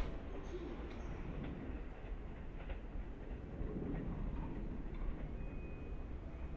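JR East 209 series electric train running away along the track: a low, steady rumble with a few faint clicks.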